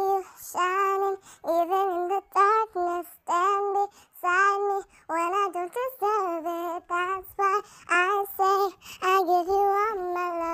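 A girl's singing voice sped up to a high, chipmunk-like pitch, singing a pop song in short phrases with brief breaks between them and no backing music.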